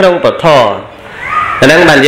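A man's voice talking in a drawn-out, sliding tone, falling in pitch, then dropping to a short lull about a second in before talking resumes.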